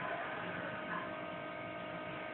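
Steady low electrical hum with a light hiss: room tone in a pause between voices.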